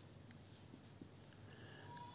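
Faint sound of a dry-erase marker writing on a whiteboard.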